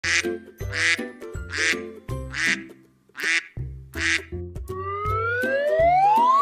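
Cartoon duck quacks, six in a row about one every 0.8 seconds, over light music. Near the end a rising whistle tone begins to glide upward.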